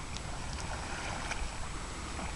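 Faint light splashes of kayak paddles dipping into a river, over a steady outdoor hiss with a low rumble of wind on the microphone.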